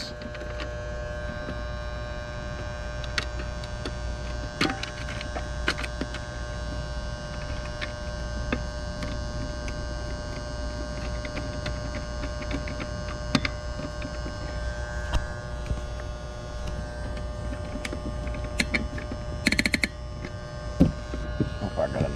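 Steady electrical hum with many overtones, unchanging throughout, with a few sharp clicks and a short scrape from hands working the wiring inside a metal electrical disconnect box.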